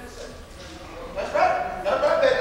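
Wordless vocal calls, a voice crying out in short pitched sounds that begin about a second in, after a quieter start.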